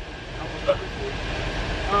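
Steady low road and engine rumble inside a moving party bus, with short bits of voices.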